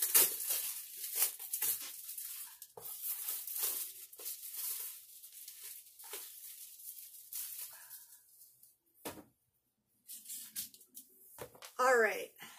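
Plastic shrink wrap being torn and crinkled off a framed board, a rapid run of crackles over the first eight seconds. A single knock follows about nine seconds in as the board is handled.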